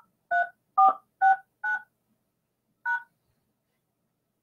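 Touch-tone keypad tones: five short two-pitch beeps in quick succession, then one more about a second later, keying a PIN followed by the pound key at an automated conference-call prompt.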